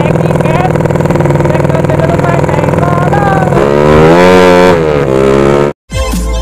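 150cc sleep-engine drag motorcycle running as it is ridden, then revving up about three and a half seconds in and easing back down; the sound cuts off sharply just before the end.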